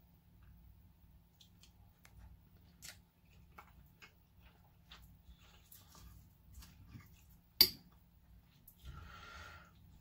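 Metal fork on a plate while rice is picked up and eaten: scattered faint clicks and scrapes, with one sharp clink about seven and a half seconds in.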